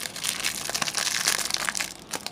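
Clear plastic wrapper on a pack of trading cards crinkling and crackling as hands tear it open and pull the cards out, a dense run of crackles.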